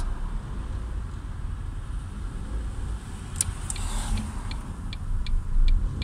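Steady low road and engine rumble of a moving car heard inside its cabin. From about three and a half seconds in, a regular ticking about two to three times a second joins it, typical of the car's turn-signal indicator.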